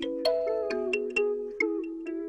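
Instrumental trap-style beat without drums at this point: a plucked guitar melody, each note starting a few tenths of a second after the last and ringing on.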